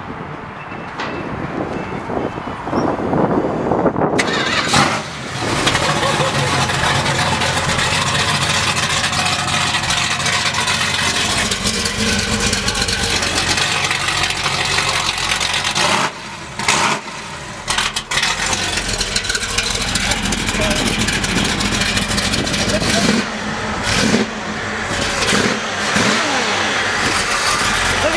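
Dodge pickup's 440 cubic-inch Chrysler V8 being started, catching about four seconds in, then running and revved several times through open electric exhaust cutouts, loud, with a few short drops in revs along the way.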